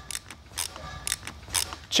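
Sharp metallic clicks and knocks, about five in two seconds, over a low rumble, as a polished aluminum beadlock wheel is handled.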